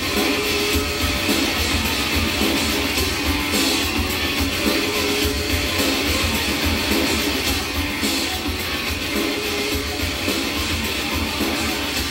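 Rock music with guitars and a steady pulsing beat.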